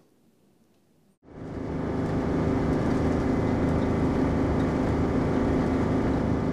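Motorboat under way, heard from inside its wheelhouse: the engine runs steadily with a droning hum over the rush of the hull through the water. It fades in quickly about a second in, after a moment of near silence.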